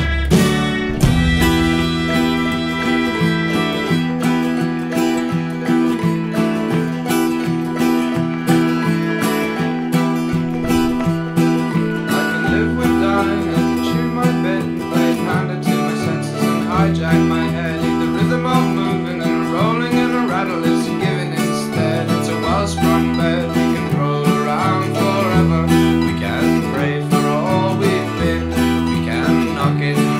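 Steel-string acoustic guitar, capoed at the seventh fret, strummed in a steady rhythm. The chords change every couple of seconds, with low bass notes shifting under them.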